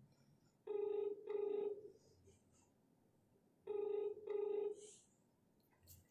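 Telephone ringback tone heard over a phone's speaker: two double rings about three seconds apart. It is the line ringing while a call waits to be answered.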